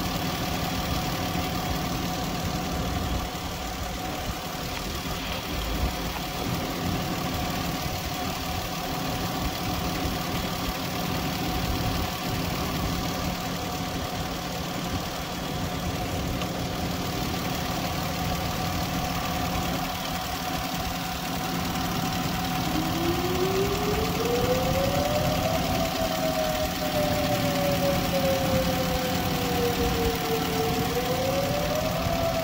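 An engine idling steadily, with a whine that rises in pitch and then slowly falls over the last quarter.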